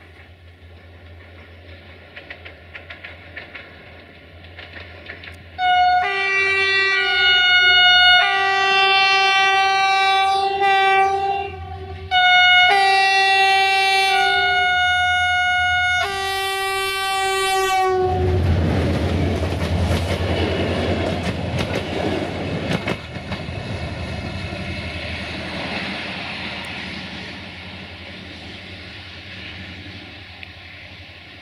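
Romanian CFR class 64 diesel-electric locomotive approaching with a low engine hum, then sounding its multi-tone horn in several long blasts for about twelve seconds. The locomotive and its passenger coaches then pass close by, engine rumbling and wheels clacking over the rails, and the noise fades as the train runs away.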